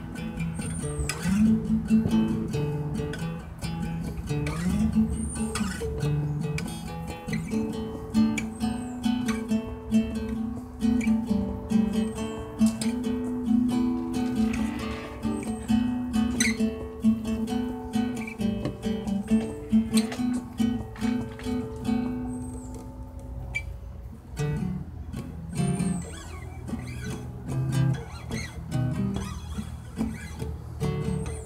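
Acoustic guitar being played, strummed chords with ringing held notes and no singing. The playing thins out briefly about three quarters of the way through, then picks up again.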